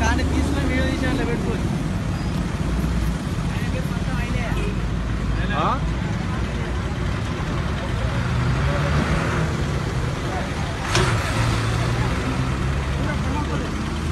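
A vehicle engine running steadily with a low rumble, while people talk in the background. A sharp knock sounds about eleven seconds in.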